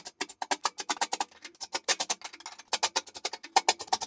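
Rapid, sharp percussive clicking, about eight to ten clicks a second, with no steady tone under it.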